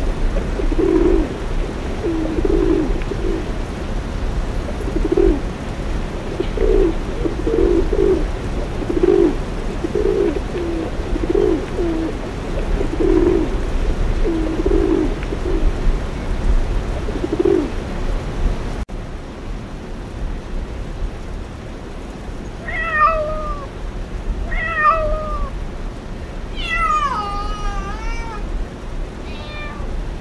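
Rock pigeons cooing, short low coos repeated about once a second. After a sudden cut about two-thirds of the way in, a domestic cat meows four times, the third meow long and wavering.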